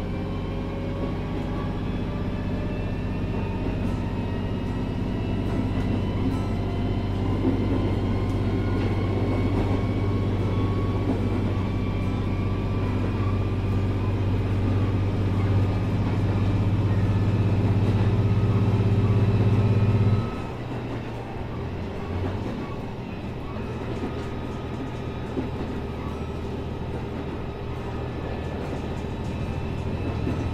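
Victrip Janus e-bike motor whining under full pedal assist, its pitch rising slowly as the bike speeds up to about 30 mph, over heavy wind rumble on the microphone. About two-thirds of the way through, the wind rumble drops off suddenly and the bike runs on more quietly.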